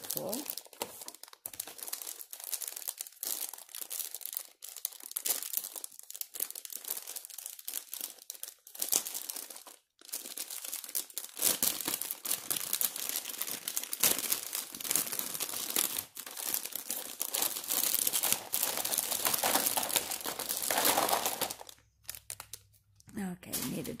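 Thin clear plastic wrapping crinkling and rustling as it is handled, in irregular crackles that grow denser and louder from about halfway through until shortly before the end.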